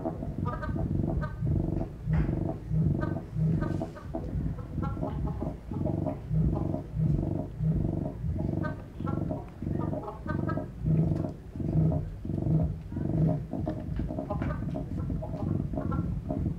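Low electronic tones from a hand-built instrument played by swinging two long wired flexible rods, pulsing in a steady rhythm of about one and a half swells a second.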